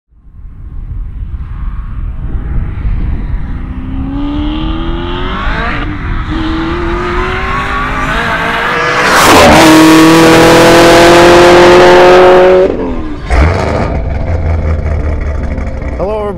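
Camaro ZL1's supercharged V8 accelerating hard under full throttle, its pitch climbing, dropping at an upshift about six seconds in, then climbing again. It passes close and loud about nine seconds in and keeps pulling, then the sound cuts off abruptly, with a brief thump just after.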